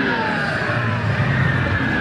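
Steady loud din of a large indoor exhibition hall, a mix of crowd noise and exhibit sounds with no single clear event.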